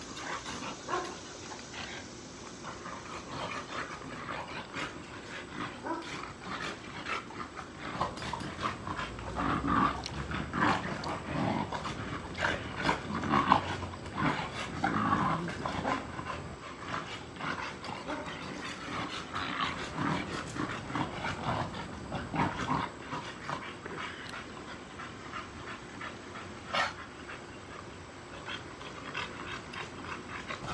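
Two bully-type dogs play-fighting, growling and vocalising at each other in irregular bouts, busiest in the middle.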